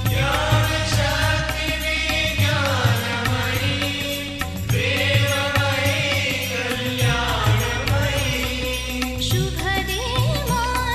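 A devotional Sai bhajan to the goddess, sung in long held notes that bend in pitch, over a steady drum beat and instrumental accompaniment.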